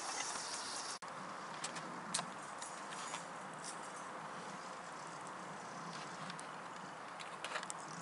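Small wood-gas camping stove burning with an open flame: a steady soft rush of fire with scattered light crackles from the burning wood.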